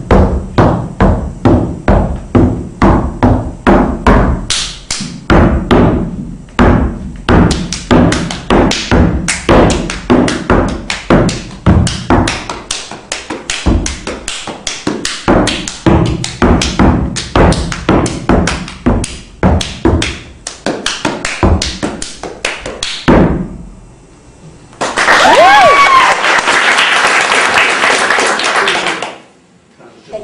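Fast, rhythmic dance footwork: sharp taps and thuds come several a second over a music beat and stop about 23 seconds in. After a short lull comes a loud burst of applause, with a whistle rising and falling in it, lasting about four seconds.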